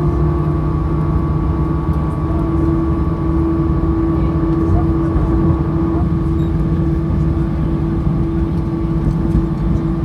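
Jet airliner's engines and airframe heard from inside the cabin as the plane slows on the runway just after landing and turns off toward the taxiway: a steady rumble with a steady hum.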